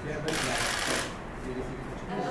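A short rustling, shuffling noise, bright and hissy, lasting under a second near the start, over faint talk in the room.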